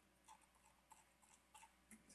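Near silence, with about five faint, short clicks spread through it.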